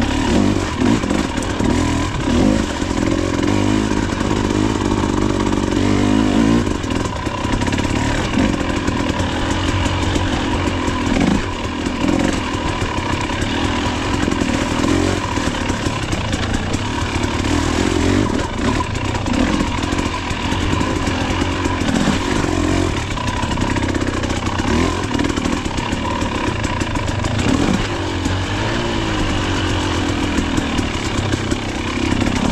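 Enduro dirt bike engine running at low speed, the engine note rising and falling with the throttle every few seconds.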